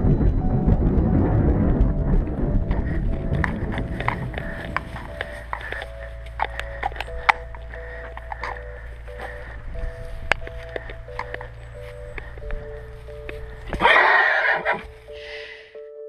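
Music fades out over the first few seconds. A horse's hooves then clop irregularly on a paved road under a few soft held musical notes. About fourteen seconds in, a horse gives a loud whinny lasting about a second.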